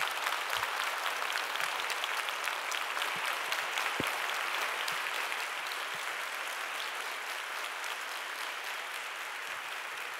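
Large audience applauding, a dense steady sound of many hands clapping that eases off slightly toward the end.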